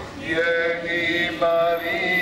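Slow devotional hymn singing in long held notes, led by a man's voice.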